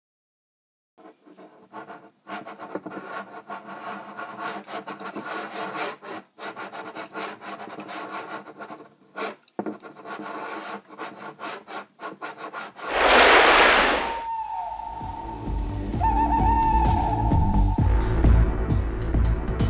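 Pencil scratching rapidly across paper in quick hatching strokes, with a few short pauses, for about twelve seconds. Then a loud whoosh, and eerie music comes in with a held high tone over a low rumble.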